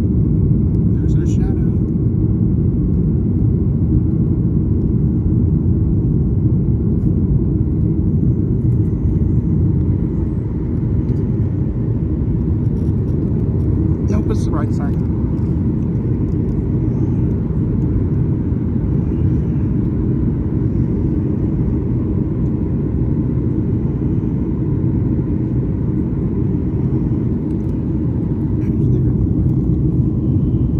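Steady, loud rumble of a Southwest Boeing 737's jet engines and rushing air heard inside the passenger cabin as the plane climbs out after takeoff.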